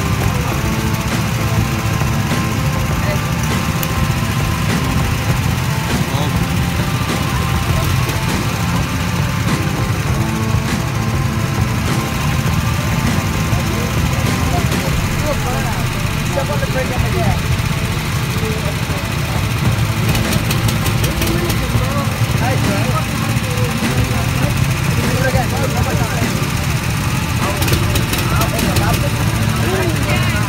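Several small go-kart engines idling together in a steady low rumble, with voices faintly in the background.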